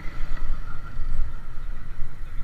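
Small motorcycle running at low speed over a cobblestone street, its engine and the rumble of the tyres on the stones steady throughout.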